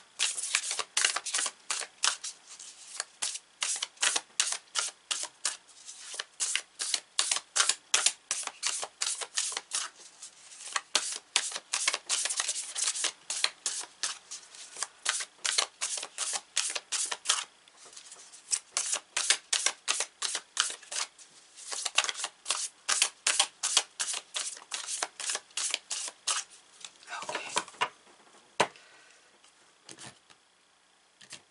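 Tarot cards being hand-shuffled: a long run of quick, crisp card slaps, a few a second, broken by short pauses, stopping near the end.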